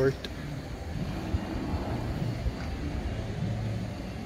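Outdoor ambience: a steady low rumble with faint distant voices.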